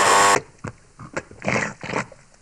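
Added cartoon-style sound effects for the animated objects: a short, loud buzzing tone at the very start, then several softer, scattered creaks and rustles, the clearest about one and a half seconds in.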